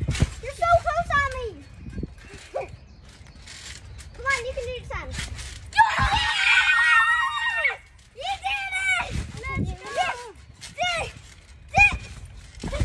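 Children shrieking and squealing in short, high-pitched calls, with one long loud scream about six seconds in that lasts nearly two seconds. Dull low thuds of bodies landing on a trampoline mat come in between.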